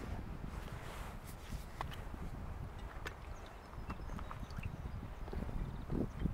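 Handling noise from a person setting up a camera: scattered small clicks and taps over a low, steady rumble.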